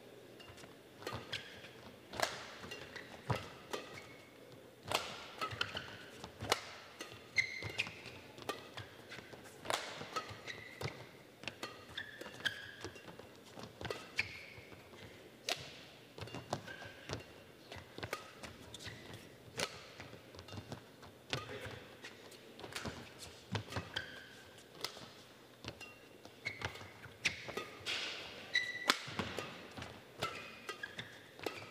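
A badminton rally: rackets strike the shuttlecock in a long exchange, about one sharp hit a second, with short squeaks from players' shoes on the court floor between the hits.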